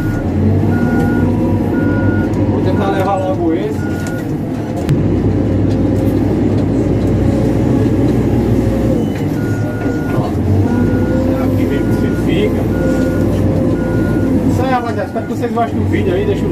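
Caterpillar backhoe loader's diesel engine running under load, heard from inside the cab, getting louder about five seconds in. Its reversing alarm beeps about once a second in two runs of several seconds each, the sign that the machine is backing up.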